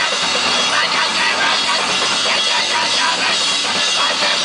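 Live crust punk band playing loud and dense: electric guitar over a driving drum kit, with no pause.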